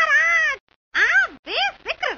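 A run of short, high meow-like calls, each sliding up and then falling in pitch, with brief gaps between them.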